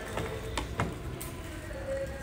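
A ceramic mug pressed and worked in a metal bowl of chopped tomatoes to mash them, giving a few faint knocks and scrapes in the first second.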